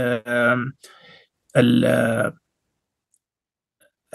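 A man's voice speaking in short, halting stretches, then about a second and a half of dead silence near the end.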